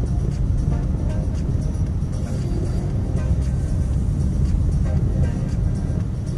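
Steady low road and engine rumble inside a moving Honda Civic's cabin, with music from the car radio playing over it.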